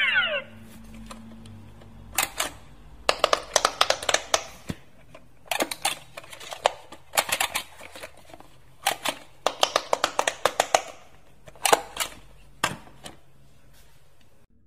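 Quick clicking as fingers press the silicone bubble buttons of a Kuromi Quick Push electronic pop-it game console. The presses come in bursts of several rapid clicks with short pauses between them.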